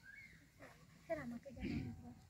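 Quiet, indistinct voices talking in short broken snatches, with a louder low murmur about a second and a half in.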